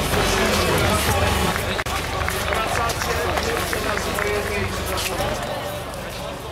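Crowd of people talking at once outdoors, with frequent short clicks and knocks close to the microphone. The sound fades down near the end.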